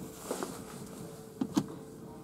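A faint, steady, single-tone hum, with two light clicks about a second and a half in.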